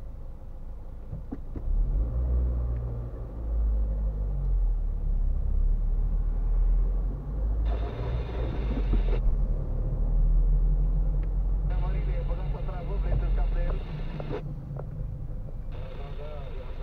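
Low rumble of a car's engine and tyres, heard from inside the cabin as the car moves off and drives in slow traffic. It swells about two seconds in and eases off shortly before the end.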